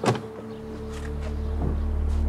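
A car door opening with one short, sharp click, then a low deep drone swelling up under steady background music.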